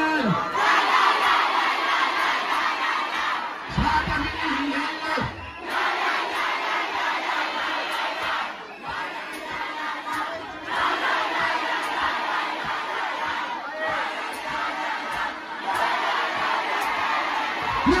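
Huge concert crowd shouting and cheering in a dense, loud mass of voices, with the backing music mostly dropped out. A couple of short low booms come about four to five seconds in.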